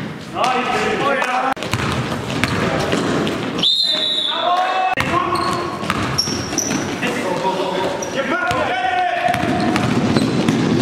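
A basketball bouncing on a gym floor as players dribble and drive, with players' voices ringing in the hall. Short, high squeaks cut in, one held about four seconds in.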